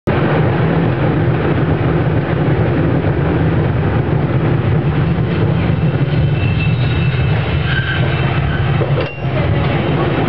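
San Francisco cable car running along its street track: a steady, loud mechanical rumble of the car on its rails over the cable slot. A few faint thin high whines come in between about six and eight seconds in, and the sound dips briefly just after nine seconds.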